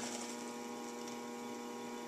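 Electric potter's wheel running with the clay on it, its motor giving a steady hum with a few held tones.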